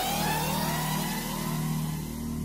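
Cinematic logo-reveal sound design: a steady low drone under several synthetic tones that sweep upward and level off, fading slowly.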